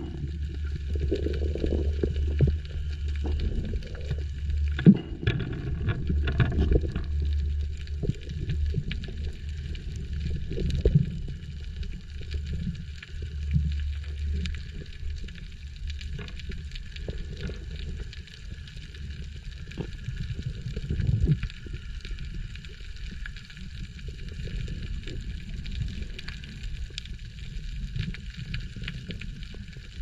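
Underwater sound through a diving camera's housing: a muffled low rumble of water moving against the housing, heavier in the first half, with scattered short clicks and knocks.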